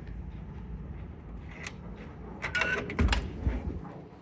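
Hotel room door with an electronic key-card lock being unlocked and opened: a cluster of sharp clicks about two and a half seconds in as the latch releases and the handle turns, then a low thump as the door swings open, over a low steady hum.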